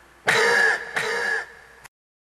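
A man clearing his throat in two rasping pulses, after which the audio cuts off.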